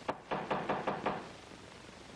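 Knocking on a door: a quick run of about six knocks within the first second.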